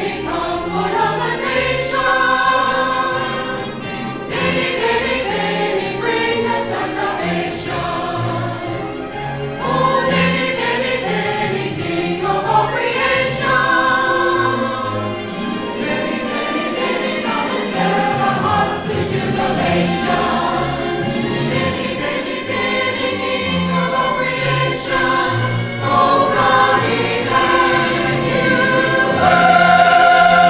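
Mixed church choir of men and women singing a sacred piece, the voices gliding from note to note, moving onto a long held chord near the end.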